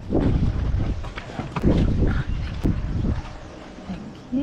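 Wind buffeting the microphone, with a few light knocks.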